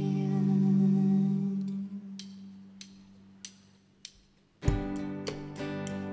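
Live band music: low held notes ring out and fade to near quiet, with four soft ticks about 0.6 s apart keeping time. The full band then comes back in together with a low drum hit and sustained chords about four and a half seconds in.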